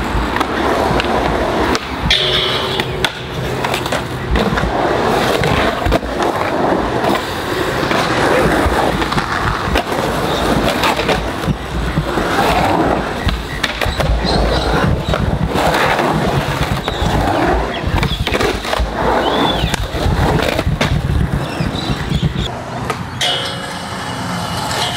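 Skateboard wheels rolling and carving on rough concrete in a skatepark bowl, a steady rumble broken by many sharp clacks and slams of the board hitting the surface.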